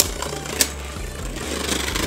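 Two Beyblade Burst spinning tops whirring against each other in a plastic stadium, with a sharp clack as they strike right at the start and another about half a second later. Music plays quietly underneath.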